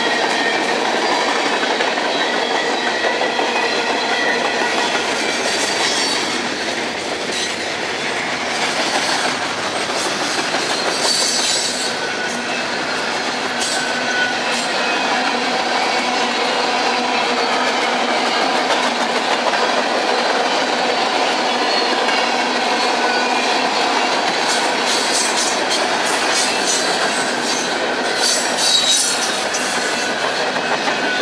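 Long freight train of hopper cars, flatcars and boxcars rolling past close by: a steady clatter of steel wheels over the rail joints with a thin squeal from the wheels, and sharper clanks in short clusters, most near the end.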